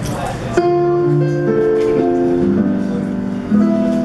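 A jazz combo begins a slow ballad introduction, starting about half a second in with held chords and notes entering one after another.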